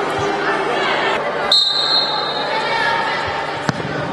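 Referee's whistle blown once, short and shrill, about a second and a half in, signalling the restart of play, over voices and chatter echoing in a large sports hall. A single sharp ball kick near the end.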